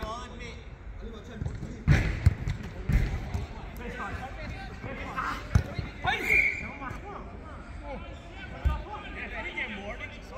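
A football being kicked during play: several sharp thuds, the loudest about two seconds in, among players' shouts and laughter.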